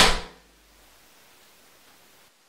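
The tail of a pistol shot dying away over the first half-second, then near silence.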